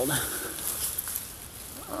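Rustling and crackling of tall weeds and brush being pushed through and brushed against, in short scattered bursts.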